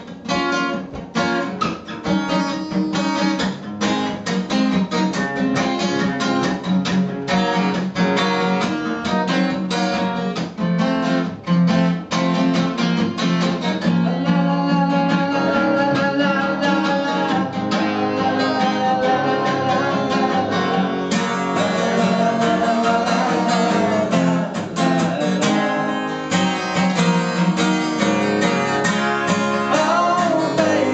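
Solo acoustic guitar strummed live: rhythmic chord strums in the first half, settling into a smoother, more sustained accompaniment in the second half.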